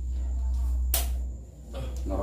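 A playing card slapped down onto a table: one sharp slap about a second in, over a steady low hum.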